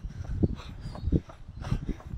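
A runner breathing hard mid-race, with the dull thuds of his footfalls and the camera jostling.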